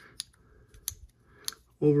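Three small, sharp clicks about half a second apart: an aftermarket handle scale being pressed and seated onto a folding knife's frame and hardware.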